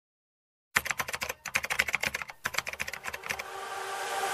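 Computer keyboard typing: a fast run of key clicks starting about three-quarters of a second in, with two brief pauses. Near the end the clicks give way to a steadily rising swell.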